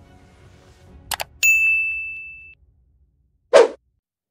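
A computer mouse click, then a single bright ding that rings out and fades over about a second. Near the end, a short loud hit.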